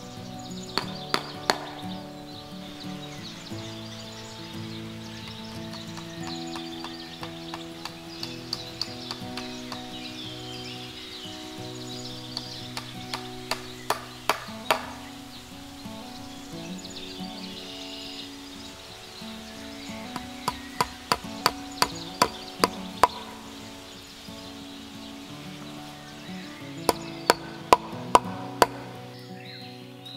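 Hammer blows in quick runs of several sharp strikes, about two to three a second, from work on a wooden post of a wire-mesh fence, over background music.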